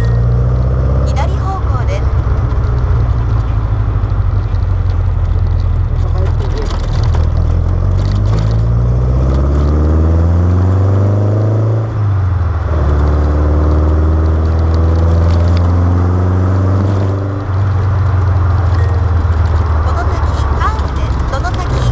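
Birkin Seven's engine heard from the open cockpit, rising in revs while pulling through a gear, with a gear change about twelve seconds in and the revs dropping again near the end, over steady wind rush.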